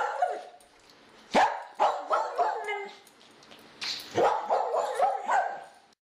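A dog barking: a quick run of sharp barks about a second and a half in, then another run of barks about four seconds in.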